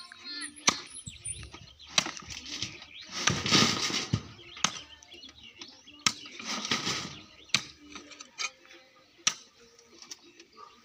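Metal wheelbarrow pushed over grass: sharp knocks about every second and a half, with two louder spells of rustling and rattling.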